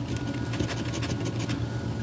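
A coin scratching the latex coating off a paper scratch-off lottery ticket in rapid short strokes, over a steady low hum.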